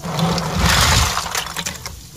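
A hand splashing and sloshing through water in a plastic pond-filter bucket full of dark, leaf-stained water. The splashing is loudest from about half a second to a second in, then eases off.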